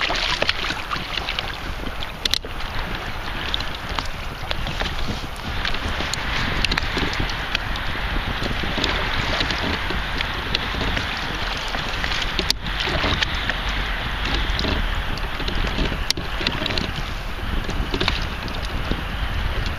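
Wind rumbling on the microphone over water sloshing against a small kayak's hull, a steady noise throughout, with a few faint clicks.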